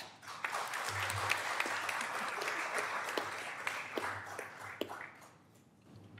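Audience applauding, dying away about five seconds in.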